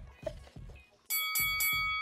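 Background music with a thumping beat under faint voices, then about a second in a bright chime strikes with three low drum hits and keeps ringing: a game-show transition sting.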